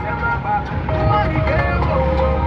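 Low, steady engine and road rumble heard from inside a moving car, with music and voices playing over it.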